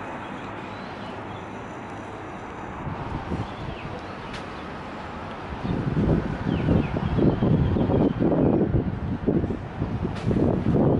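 Steady outdoor background noise with a few faint bird chirps; a little past halfway in, gusty wind starts buffeting the microphone and becomes the loudest sound.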